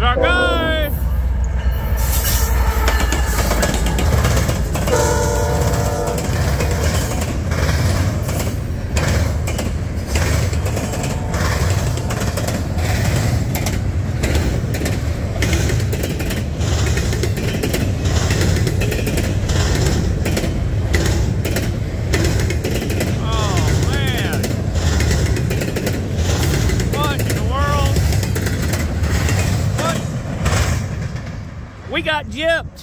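CSX double-stack container train passing close by at speed, its wheels rumbling and clicking steadily over the rail joints. The locomotive horn sounds briefly about five seconds in, and a few short high-pitched wheel squeals come and go.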